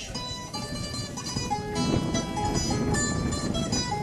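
Guitar accompaniment playing an instrumental passage of plucked notes between sung verses of a cantoria ao desafio, with no singing over it.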